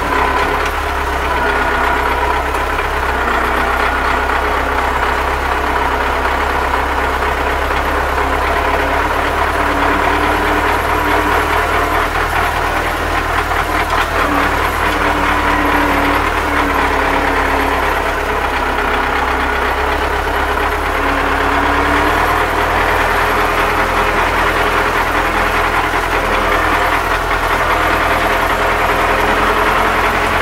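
Tractor engine running steadily, heard from inside the cab while the tractor drives across a field.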